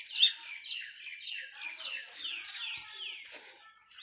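A bird singing a run of short, falling high notes, about three a second, fading out near the end.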